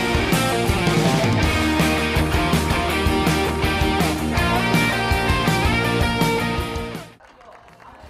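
Rock music with guitar and a steady beat, dropping away about seven seconds in.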